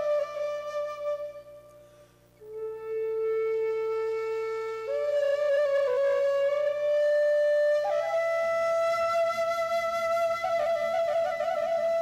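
Flute playing a slow melody of long, held notes over a steady low drone, with a brief quiet gap about two seconds in.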